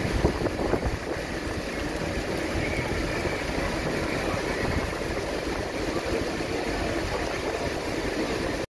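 Steady drone of running vehicle engines, mixed with an even hiss like wind on the microphone, holding level without any sharp events.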